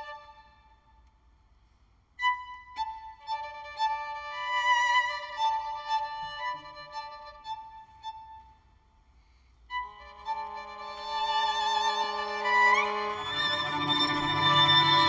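String quartet playing a contemporary piece: high violin notes sound in short spells separated by pauses of near silence. From about ten seconds in, the instruments hold sustained notes together, with lower viola and cello tones joining and a quick upward slide, growing louder toward the end.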